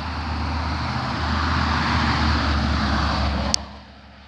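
A motor vehicle passing on the road, its tyre and engine noise swelling to a peak and then cut off suddenly with a click about three and a half seconds in.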